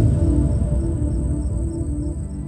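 Crickets trilling in one steady high tone, over low ambient background music.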